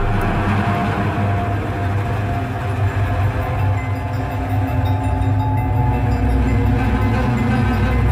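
Dramatic film background score: a dense, loud low rumble with a few faint held higher notes, holding steady after swelling up just before.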